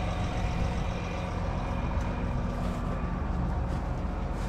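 Tractor diesel engine running steadily while the tractor stands parked, heard from beside the disc harrow hitched behind it.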